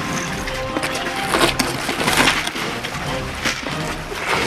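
Background music over the scraping and rustling of clothing and a backpack against rock as a person squeezes through a narrow crevice.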